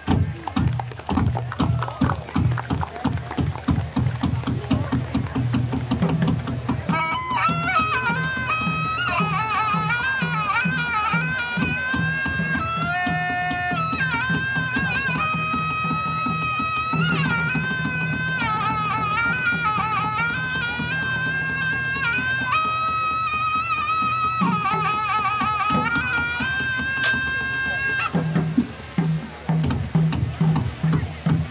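Music for a Muong swing-drum dance: fast drum beats, joined about seven seconds in by a reedy wind instrument playing a winding melody over the percussion. Near the end the melody stops and the drumming carries on alone.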